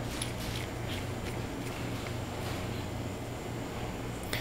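Quiet steady room tone with a low hum, and a few faint soft ticks from the butane soldering iron's tip assembly being screwed back on by hand.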